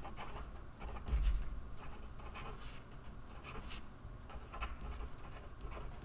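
Marker pen writing on paper: short, irregular scratchy strokes as words are written out. A soft low thump about a second in.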